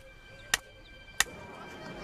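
Two sharp knocks about two-thirds of a second apart, part of an even beat, over faint sustained music tones.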